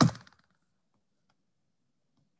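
A brief bump and rustle on a video-call participant's microphone as he shifts forward, lasting about half a second at the very start.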